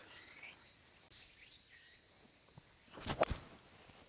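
Insects buzzing in a steady, high-pitched drone, with a loud swell about a second in. A couple of short sharp clicks come about three seconds in.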